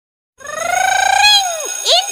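A high-pitched, voice-like call that rises slowly, holds, then falls away about a second and a half in. A quick rising whoop follows near the end.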